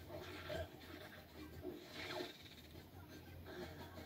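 Faint television sound from the live-action Scooby-Doo film, including the CGI Scooby-Doo's voice, heard through the TV's speakers across the room over a steady low hum.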